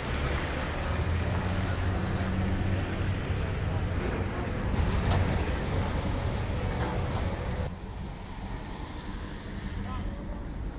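Cars driving past on a rain-soaked street, their tyres hissing on the wet pavement over a steady low engine rumble. The hiss drops away sharply about three-quarters of the way through.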